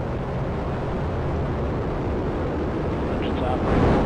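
Launch noise of a ULA Vulcan rocket's two BE-4 engines and two solid rocket boosters during the first seconds of ascent: a steady, deep, noisy rumble that swells briefly near the end.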